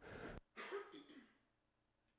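A man faintly clearing his throat: a short rough rasp within the first second or so.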